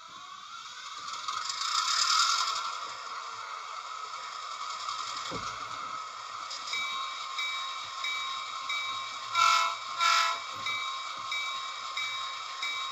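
Train sound effect: a steady rushing rail noise, joined about halfway through by a short high tone repeating a little under twice a second, with two short horn blasts about ten seconds in.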